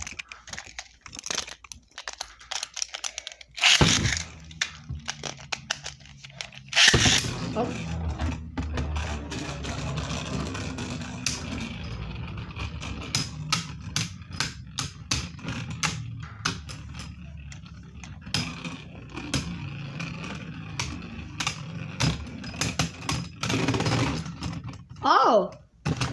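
Beyblade spinning tops battling in a plastic stadium. A sharp burst comes about four seconds in and another about three seconds later. After that the tops spin with a steady whirring scrape, broken by rapid clicking hits as they knock against each other and the stadium wall.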